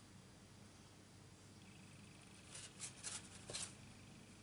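Mostly near silence, with three or four short, soft rustles in the second half as a folded cardstock greeting card is turned over and handled.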